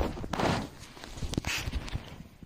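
Bedding rustling, with soft thumps and clicks, as a bull terrier scrambles about on the bed right against the phone's microphone. There are two louder bursts, about half a second in and near one and a half seconds.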